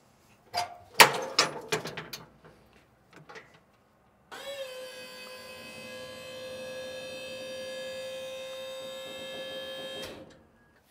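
A few sharp clicks and knocks, then about four seconds in the electric hydraulic pump of a Big Tex 14GX dump trailer starts and runs with a steady whine as it raises the dump bed.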